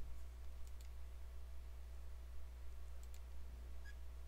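A few faint computer mouse clicks, in quick pairs, over a steady low hum.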